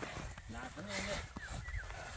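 Faint distant voices talking in short phrases over a low rumble.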